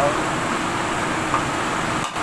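Steady roar of a lit gas wok burner under a wok in a commercial kitchen.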